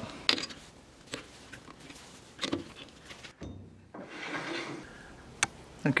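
Scattered light clicks and knocks of metal lathe parts being handled and tightened as the tailstock is locked and a drill bit fitted in place of the centre, with a louder knock about halfway through and a sharp click near the end.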